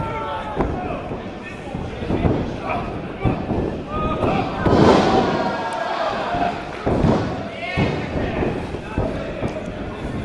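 Several thuds of wrestlers' bodies hitting a wrestling ring's mat during grappling and pin attempts, with voices in the background.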